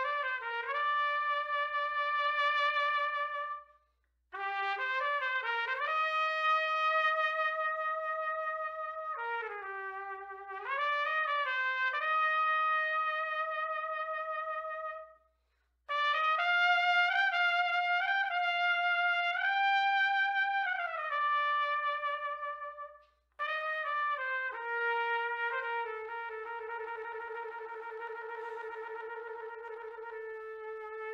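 Solo trumpet played through a Monette Classic B4LD S1 Slap mouthpiece: slow melodic phrases of long held notes, broken by three short pauses for breath. The last phrase settles on a long sustained note.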